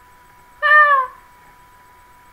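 A cat meowing once: a single loud call about half a second long whose pitch falls away at the end.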